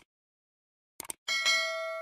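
Subscribe-animation sound effect: three quick mouse clicks about a second in, then a notification-bell ding that rings on and fades slowly.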